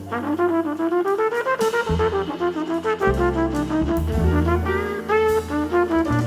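Trumpet playing a fast jazz solo line of short notes that climb and fall, over double bass and band accompaniment.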